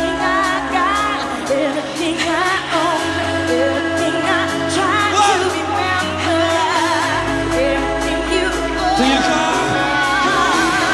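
Dance-pop song playing: a sung vocal line over held synth chords, sustained bass notes and a steady beat.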